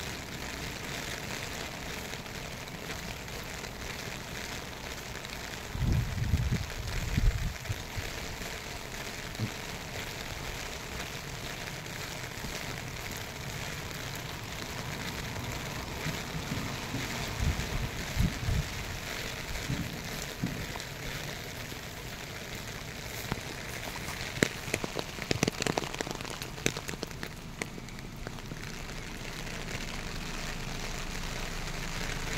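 Steady rain falling, an even hiss throughout. Two short low rumbling bursts stand out about six seconds in and again around seventeen seconds, and a cluster of sharp ticks comes near the end.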